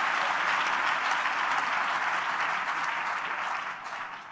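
Audience applauding steadily, the applause beginning to die down near the end.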